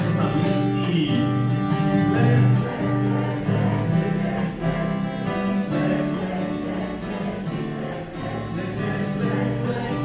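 Acoustic guitar accompanying a cabaret song, with several voices singing along together in held notes.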